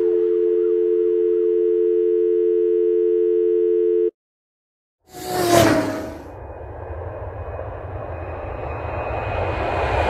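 Telephone dial tone: two steady tones held together for about four seconds, then cut off sharply. After a second of silence comes a sudden loud noisy burst with a short falling whine, then a rumbling noise that slowly builds toward the end.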